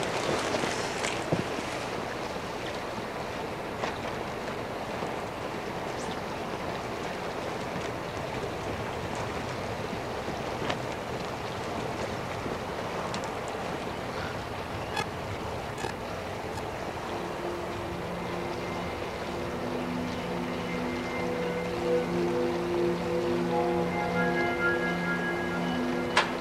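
A steady rushing hiss with a few faint clicks. About two-thirds of the way in, a film score of long held notes comes in and builds into chords toward the end.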